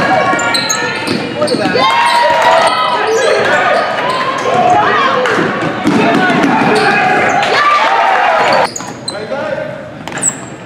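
Basketball game noise in a large gym: the ball bouncing, sneakers giving short high squeaks on the hardwood court, and crowd and players shouting over one another. The shouting drops off sharply about eight and a half seconds in.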